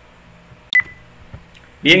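A single computer mouse click about three-quarters of a second in, followed by a brief high ring, against quiet room tone. A spoken word comes at the end.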